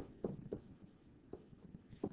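Faint handwriting strokes of a stylus on a screen, with a few light taps.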